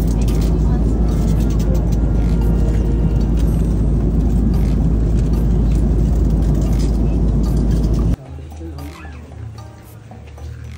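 Steady, loud cabin noise of an airliner in flight: engine and airflow roar with a deep rumble. It cuts off sharply about eight seconds in, giving way to a much quieter indoor murmur.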